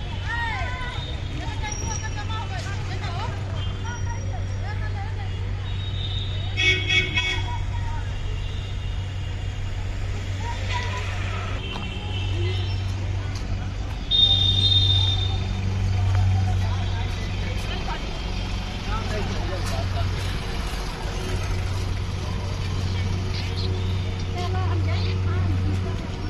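Evening road traffic with vehicle horns tooting briefly about seven seconds in and again, loudest, around fourteen seconds, over a steady low hum and the chatter of people.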